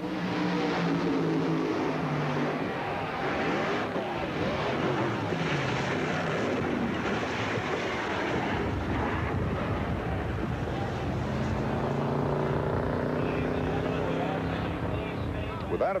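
Track sound of two nitro funny cars racing and crashing: a loud, continuous din of engine noise with crowd voices mixed in.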